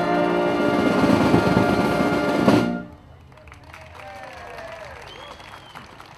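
Military brass band holding a loud final chord with drums and cymbals. It cuts off suddenly about two and a half seconds in, leaving quieter outdoor background with faint sliding calls.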